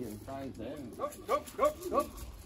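A man's voice calling racing pigeons home to the loft. It is a string of short, high, rising calls, about three a second in the second half.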